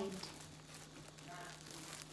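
Thin clear plastic bag crinkling faintly as it is handled and pulled open by hand.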